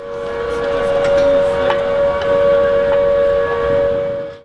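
A loud, steady two-note horn blast held for about four seconds over a rushing noise. It swells in at the start and cuts off suddenly just after the end.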